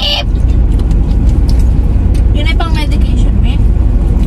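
Steady low rumble of a car heard from inside its cabin, with a short voice about two and a half seconds in.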